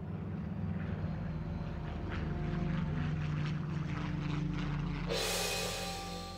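Propeller aircraft engine droning steadily, with music underneath. A loud rushing whoosh comes in about five seconds in.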